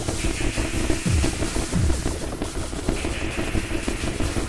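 Noisy electronic music: a dense hissing texture over a steady drone, with two low bass booms that drop in pitch, about a second and two seconds in.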